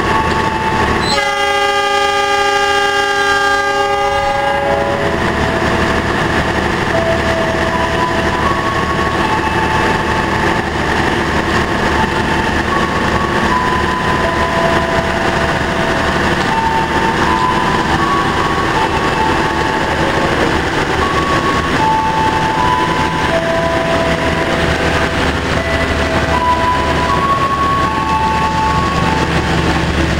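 Passenger train passing close by on the station track. The locomotive horn sounds once as a multi-note chord for about three seconds, starting about a second in. Then the steady rumble of the carriages rolling past continues, with short high tones coming and going.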